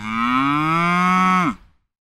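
A cattle moo sound effect: one long moo that rises slightly in pitch and drops off as it ends about a second and a half in.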